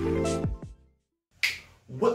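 An intro jingle with sustained notes and a steady beat ends about a third of the way in. After a moment of silence comes a single sharp click.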